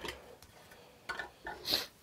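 A few light clicks and taps as small diecast model trucks are handled on a tabletop, with a short soft rustle near the end.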